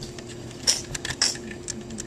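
Light plastic clicks and taps from a LEGO car being handled as its hinged hood is flipped open, with a cluster of clicks about a second in.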